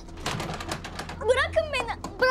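Lever door handle on a locked door being rattled hard and fast, a quick run of metallic clicks and clacks. Near the end comes a child's short distressed cry.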